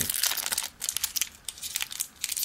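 Clear plastic wrapper crinkling and crackling as fingers peel it off a sealed deck of trading cards. The crackle comes and goes, with a couple of brief lulls.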